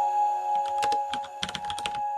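Keyboard-typing sound effect, a quick run of clicks starting nearly a second in, over background music with steady held notes.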